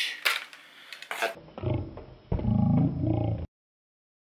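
Edited-in sound effect: a loud, low growl-like sound with a dull, reduced-fidelity tone, about two seconds long, that cuts off abruptly into dead silence. Before it, a few light clicks from the metal CPU cooler being handled.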